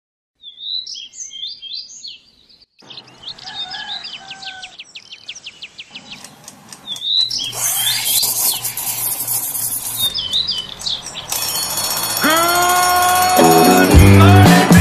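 Birds chirping, then music builds in under them from about seven seconds in and grows louder, with notes sliding up into place near the end.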